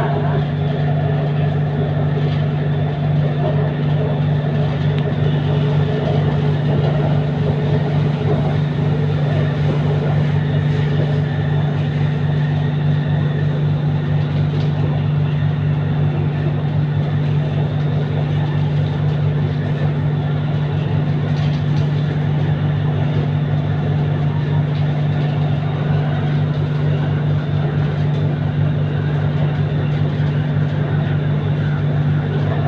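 Interior running noise of a Siemens Modular Metro electric train travelling on elevated track: a steady low hum over an even rumble of wheels on rail.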